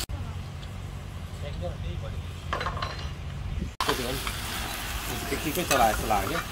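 A low rumble with faint distant voices for the first few seconds. Then, after a sudden cut, chicken sizzling as it fries in a pan over a wood fire, with a laugh near the end.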